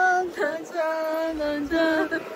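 A song with a high singing voice holding long, slow notes. It is laid over the picture as background music.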